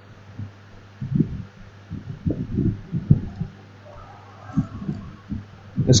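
Irregular muffled low thumps, about a dozen over the few seconds, over a steady low electrical hum.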